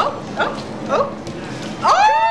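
Excited human voices calling out "oh, oh?" in a few short yelping cries, then a long drawn-out "ohh!" near the end that rises and then falls in pitch.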